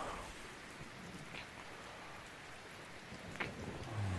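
Steady rain ambience, with two sharp clicks, one a little past a second in and another near the end.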